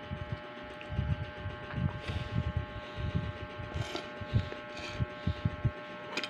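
Close-up chewing of tapioca pearls from a bubble tea: soft, irregular mouth sounds with a few brief sips or rustles, over a faint steady hum.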